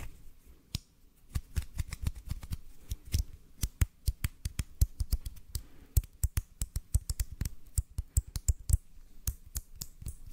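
Close-miked hand sounds: fingertips and hands worked together right at the microphone, giving a fast, irregular run of sharp crackling clicks. The clicks are sparse for the first second or so, then come thick and fast.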